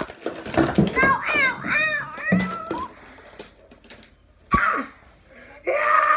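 A child's high-pitched, wordless vocalizing, in short calls with quieter gaps between.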